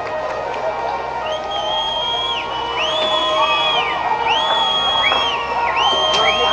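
A crowd shouting, with several long, high whistles that rise, hold for about a second and fall, overlapping one another.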